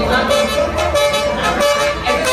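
Live band music with a horn-like pitched note sounded four times on the same pitch over guitars and drums.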